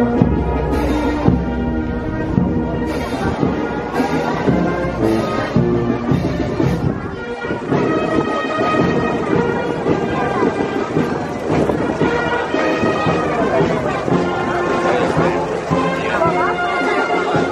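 Brass band with sousaphones playing a tune, with the voices of a crowd underneath.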